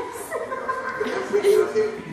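People chuckling, mixed with talking voices.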